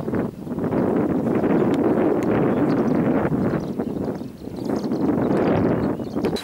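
Wind buffeting the camera's microphone: a dense, loud noise that dips briefly near the start and about four seconds in.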